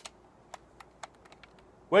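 A few light clicks and rattles of a 32-round Pro Mag magazine being wiggled into the magazine well of a Chiappa M1-9 carbine, loudest about the start, then thinning to small ticks as the magazine goes in.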